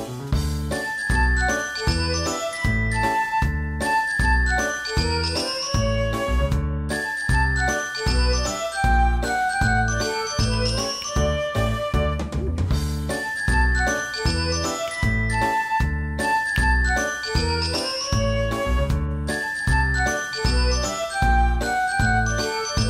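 Background music: an upbeat instrumental track with a steady beat about twice a second and repeating quick runs of high melody notes.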